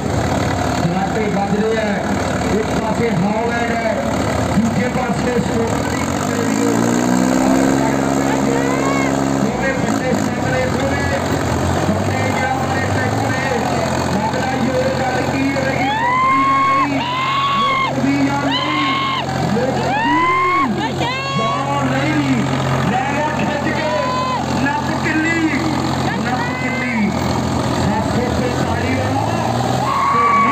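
Sonalika DI 745 and New Holland 5620 tractor diesel engines running hard under full load, locked in a tug-of-war, with the engine pitch rising about six seconds in and then holding steady. From about the middle on, spectators shout and call out over the engines.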